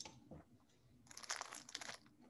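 Faint crackling rustle, like handling noise on an open microphone, lasting about a second and starting about a second in, after a soft click at the start.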